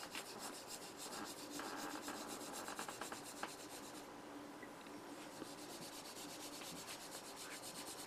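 A greenware file scraping faintly against the inside rim of an unfired clay cup, in quick repeated strokes that smooth rough edges off the greenware.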